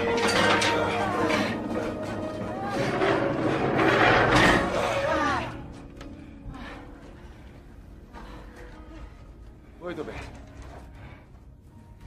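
People straining and crying out without words as they lift a heavy frame, over film score music with long held notes. The effort cries are loudest in the first five and a half seconds, then the music carries on much quieter, with a short cry about ten seconds in.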